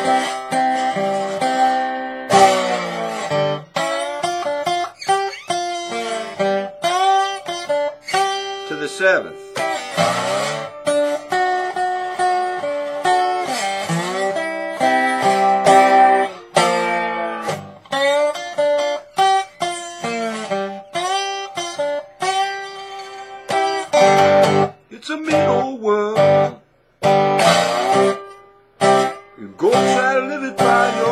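Acoustic guitar in open G tuning played with a metal slide: a blues slide line of plucked notes, with the slide gliding up and down into pitches. The playing breaks off briefly twice near the end.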